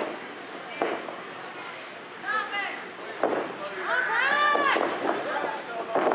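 Spectators shouting at a small wrestling show, loudest about four seconds in, with two sharp thuds from the wrestling ring, about a second in and again about three seconds in.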